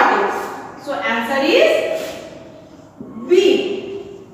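A woman speaking in short phrases with pauses between them.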